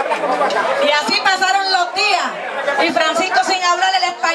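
Speech: a woman's voice through a microphone, with chatter from the people around.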